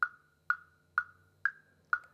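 A sampled woodblock click track from GarageBand's beat sequencer, playing a steady metronome beat of about two strikes a second. A higher woodblock sounds on the one and a lower woodblock on beats two, three and four.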